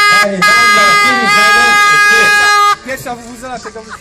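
A horn sounding one long, loud, steady blast of about three seconds, dipping slightly in pitch partway through, then cutting off suddenly, with voices around it.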